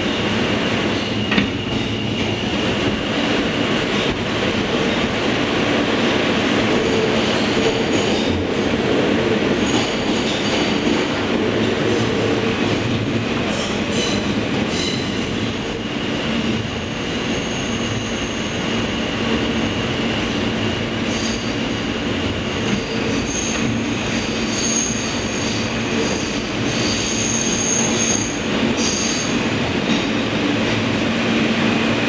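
NYC subway R160A car heard from inside, running at speed through a tunnel with a steady rumble and clatter of wheels on rail. High-pitched wheel squeal comes and goes over it, strongest in the second half as the train takes curves.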